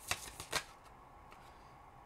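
Tarot cards being shuffled by hand: three or four quick, short rustles in the first half-second.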